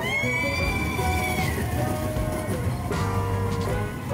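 Steam train whistle blowing once for about a second and a half, its pitch sliding up as it opens and down as it closes, over background music.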